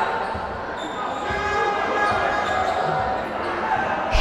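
Basketball being dribbled on a parquet court, a few thuds of the ball against the floor over the steady din of an indoor sports hall, as the ball handler runs down the clock before the last shot of the quarter.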